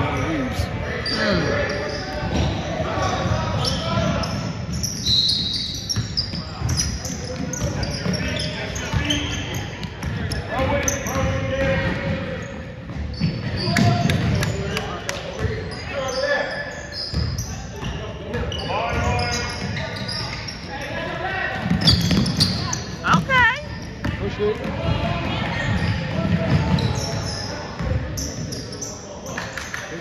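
Basketball game in a gym: the ball bouncing on the hardwood court, sneakers squeaking in short high chirps, and voices of players and spectators echoing through the hall.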